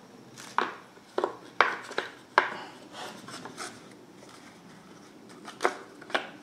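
Hard plastic clicks and knocks of a blower motor resistor being pushed against the plastic blower motor housing: a quick run of sharp knocks in the first two and a half seconds, softer ones after, and one more near the end. The resistor is being offered up upside down, so it does not seat.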